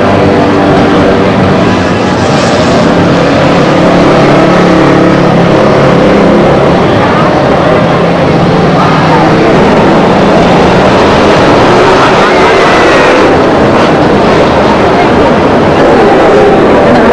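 Loud, steady street noise of road traffic mixed with people's voices.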